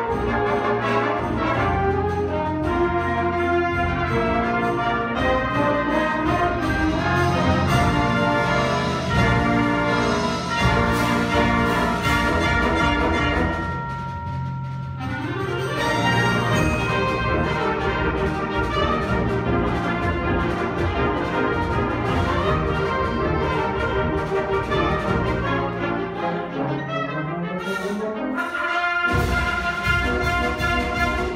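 High school concert band playing, with brass and woodwinds together. It drops to a quieter, thinner passage about halfway through. Near the end a rising low slide is followed by a brief break before the full band comes back in.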